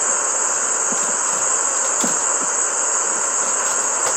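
Steady high-pitched chorus of night insects, unbroken throughout.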